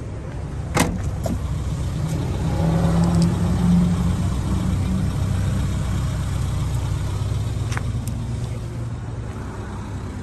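Car engine idling steadily, growing louder for a few seconds around three to four seconds in. A single sharp knock sounds about a second in.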